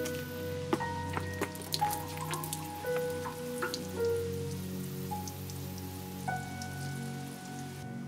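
Water from a watering can splashing and dripping onto plants and ground: many quick drops in the first few seconds, thinning to scattered drips after. Slow background music with held notes plays underneath.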